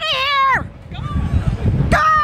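A woman's high-pitched, drawn-out shout that falls in pitch and breaks off about half a second in, part of a fan's imitation of a baseball announcer's home run call. A low rumble follows, then another long shout starts at the very end.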